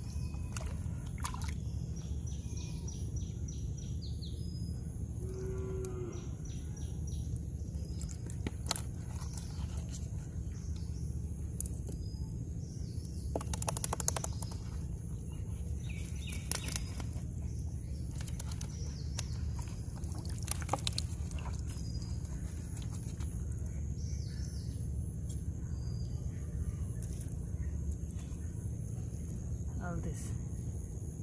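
A steady low rumble throughout, with a few short splashes and rustles as fish are worked out of a nylon gill net by hand on weed-covered water. A brief low call comes about six seconds in.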